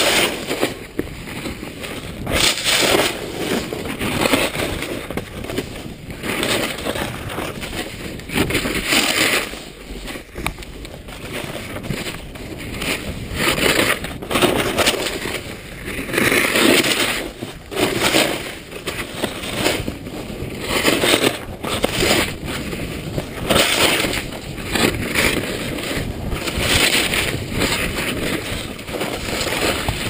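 Snowboard edges scraping and carving over packed snow, swelling with each turn every second or two.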